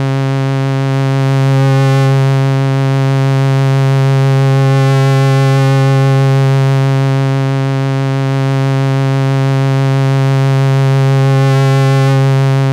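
Moog Sub 37 analog monosynth holding one long, steady low note with a buzzy stack of overtones. Its upper tone shifts slightly now and then as the mixer's feedback knob is turned, which makes only a subtle difference while the filter resonance is off.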